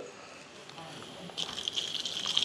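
Hot water poured from a kettle onto crumbled mozzarella curd in a wooden bowl, heard as a steady splashing stream starting about one and a half seconds in after a quiet start. It is the stage where hot water melts the curd so the cheese knits together.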